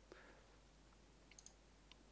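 Near silence with a few faint computer mouse clicks, a quick cluster about a second and a half in and one more near the end.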